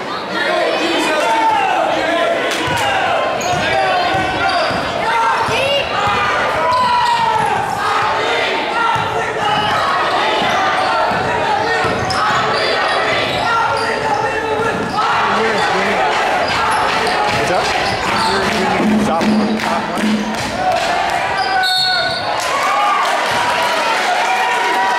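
Basketball bouncing on a hardwood gym floor during live play, with voices of players and spectators that echo in the large hall.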